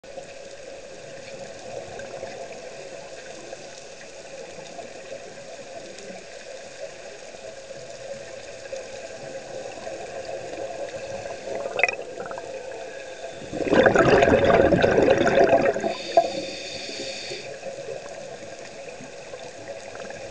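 Underwater sound of the sea, steady and low, broken about two-thirds of the way in by a loud rush of bubbles lasting a couple of seconds, the diver's scuba regulator exhausting a breath, with a fainter hiss just after.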